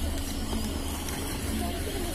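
Steady low rumble with a constant low hum, and faint voices in the background.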